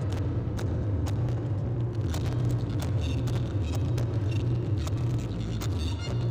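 A loud, steady low rumble with scattered sharp clicks and taps over it.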